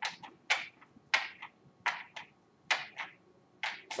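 A series of short hissing puffs of air, about a dozen in four seconds, many in quick pairs, made to imitate blood being pumped through the heart and its valves.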